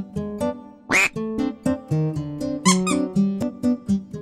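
Light background music of plucked strings in a bouncy, even rhythm, with a quick rising whistle-like sound effect about a second in.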